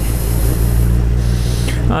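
Suzuki GSX-R sportbike's inline-four engine running at low, steady revs, with wind hissing on the helmet microphone.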